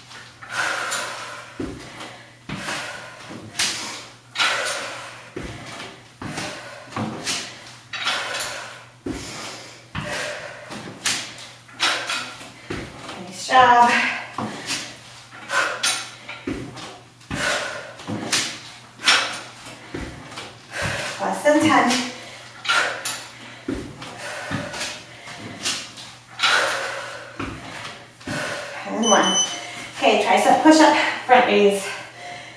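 Sneakered feet stepping and hopping up onto a plyo box and back down to the floor, a thud about once a second, during dumbbell step-ups. Breathing and brief vocal sounds come in now and then.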